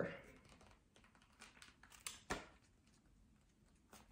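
Faint rustling and a few soft ticks of paper book pages being leafed through by hand, in an otherwise quiet room.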